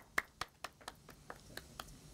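Faint, scattered hand claps from a few people, about four a second at first, then thinning out and stopping near the end.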